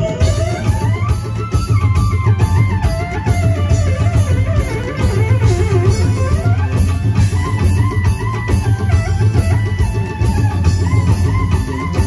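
Live folk-rock band playing an instrumental break: a lead melody that slides up and down over bass guitar and drum kit, with no singing.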